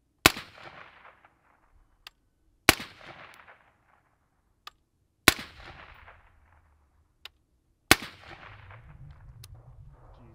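Four single suppressed 5.56 rifle shots from a 10.5-inch LMT AR fitted with a Dead Air Sierra 5 suppressor, fired slowly about two and a half seconds apart, each trailing off in a short echo.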